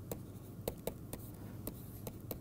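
Stylus tapping and scratching on a tablet surface while handwriting: a handful of sharp, irregular clicks as the pen strokes land and lift.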